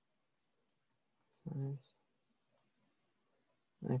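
Faint, sparse clicks from writing on the computer as equations are drawn by hand into a paint program. A short voiced sound comes about a second and a half in, and a spoken word comes near the end.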